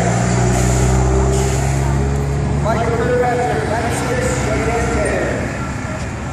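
A car's engine running low and steady as it drives slowly past, fading out after about two seconds, with people talking around it.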